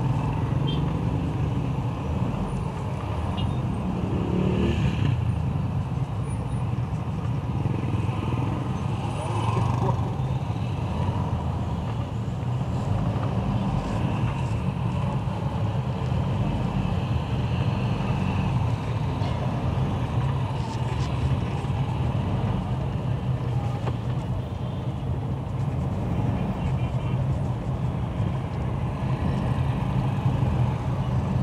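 Steady low drone of a vehicle's engine and road noise, heard from inside the cabin while driving slowly in city traffic.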